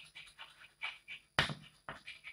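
Chalk writing on a blackboard: a string of short, faint scratchy strokes, with a sharper tap about one and a half seconds in.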